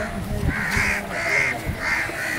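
Birds calling with harsh, crow-like calls, about three in two seconds and repeating steadily.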